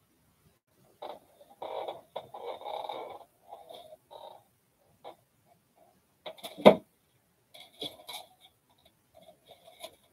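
Handling noises of craft materials on a work table: irregular rustling and crinkling in short spells, with one sharp knock about two-thirds of the way through, the loudest sound.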